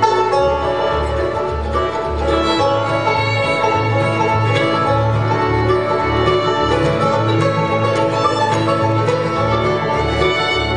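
Bluegrass band playing an instrumental break, with a steady, pulsing bass line under the plucked and bowed strings.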